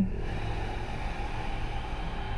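A steady low ambient drone with a soft, even hiss over it, holding without change under the pause.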